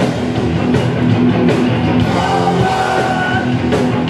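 Hardcore punk band playing live at full volume: distorted electric guitars, bass and drums in a dense, unbroken wall of sound.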